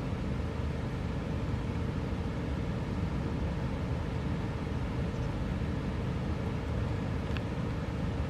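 Steady low outdoor background rumble, with one faint short tick near the end.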